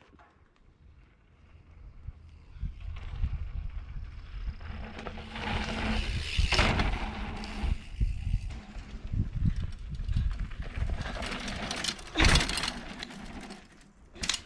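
Wind buffeting the microphone, mixed with rumbling and rattling from a mountain bike rolling over a dirt trail. It is quiet for the first couple of seconds, then builds, with loud gusts or bumps about six and a half and twelve seconds in.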